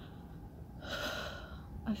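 A woman breathing audibly, with one louder, sharp breath about a second in, the breathing of someone in the middle of a panic attack.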